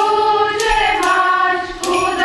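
A choir of young women singing together, holding long notes that change pitch about halfway through.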